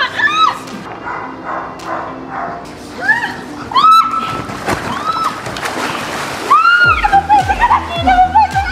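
Pool water splashing and sloshing around an inflatable mattress as the people on it are tipped into the pool, with several short high-pitched cries. Background music with a steady beat comes in about seven seconds in.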